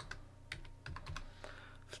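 Computer keyboard typing: about seven separate, faint keystrokes as a short word is typed.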